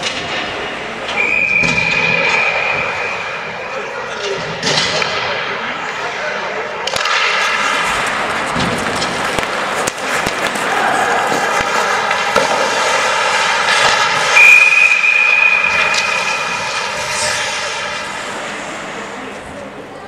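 Ice hockey play echoing in a rink: a steady droning tone with overtones that swells and fades, a piercing high note twice, and a few sharp clicks of sticks and puck over the general rink noise.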